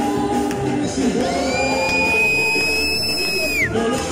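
A live band, with electric bass and keyboard, plays a lively Latin-style gospel song with singing. About a second in, a high, thin tone slides up and holds over the music for over two seconds, then drops away near the end.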